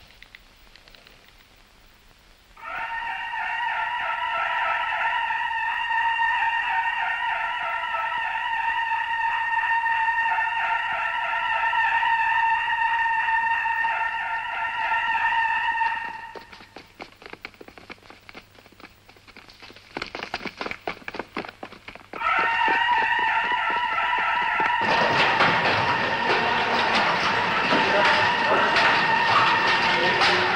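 A barracks alarm ringing with a steady, high tone from about three seconds in, stopping for several seconds and then ringing again: the call-out alarm that sends soldiers running. Near the end a loud clatter of soldiers hurrying out joins it.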